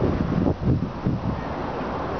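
Wind buffeting the camera microphone: a low rumble, gustier in the first second and steadier after.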